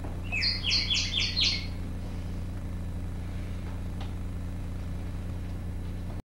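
Sound effect of a caged bullfinch chirping: a quick run of about six short, bright chirps in the first second and a half. A steady low electrical hum runs underneath.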